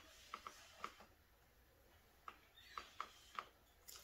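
Faint puffs of air from a turkey baster squeezed over wet acrylic paint to break its surface tension, with small clicks scattered through; overall very quiet.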